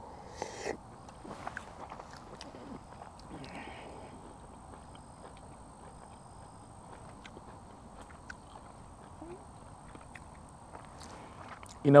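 A person chewing a mouthful of MRE beef and vegetable stew, close to the microphone: soft mouth clicks and smacks over the first few seconds, then only faint chewing. A faint, steady high tone runs underneath.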